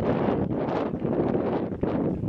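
Wind buffeting the camera microphone: an uneven, gusting rumble.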